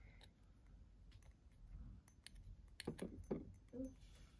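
Faint small clicks and taps of a miniature pan knocking against a tiny ceramic plate to shake stuck scrambled egg loose, with a few sharper taps about three seconds in.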